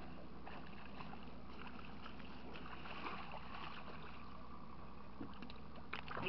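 Boat motor running with a steady low hum under a wash of water and wind noise, with a few faint knocks.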